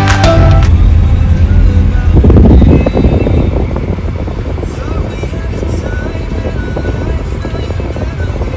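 Road and engine noise inside a moving car: a heavy low rumble, loudest over the first three seconds and then steadier and softer.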